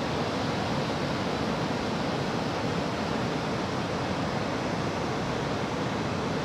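Ocean surf breaking and washing up a sandy beach, a steady, unbroken rushing noise.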